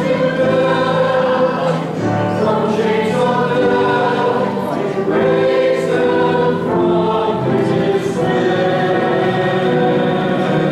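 A small church choir singing a hymn in held notes that change every second or so.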